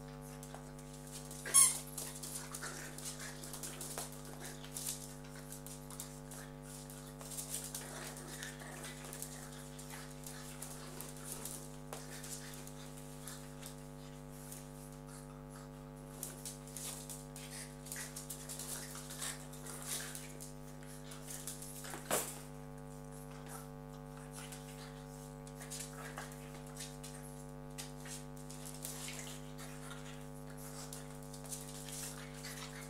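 Two French bulldog puppies playing rough over a rubber chicken toy: a run of small scuffles and knocks, with a sharp, loud sound about a second and a half in and another about 22 seconds in. A steady hum runs underneath.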